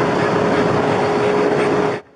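Loud, steady rushing noise with a faint steady hum underneath, picked up by a police body camera during a dog rescue from a parked car. It cuts off suddenly at the end.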